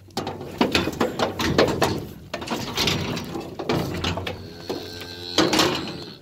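Metal livestock trailer gate and panels rattling and clanking in a rapid, uneven run of knocks.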